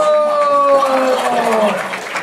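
One long drawn-out vocal call from a single voice, held on one tone that slowly falls in pitch and trails off shortly before the end, over crowd noise.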